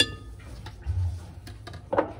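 A plastic spoon tapping against a glass blender jar as bouillon powder is knocked into it: a sharp tap at the start, a soft low thud about a second in, and another sharp knock near the end.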